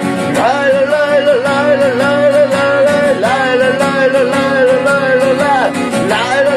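A man singing with a strummed steel-string acoustic guitar. He holds long, wavering notes in phrases that break and start again about three times, over a steady strumming rhythm.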